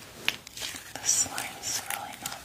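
ASMR whispering and wet mouth sounds: a few sharp little clicks, and a short hissy breath about a second in.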